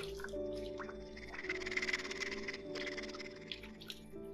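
Hands scooping and splashing stream water onto a face, a rustling patch of splashes from about a second in until nearly three seconds, over held notes of background music.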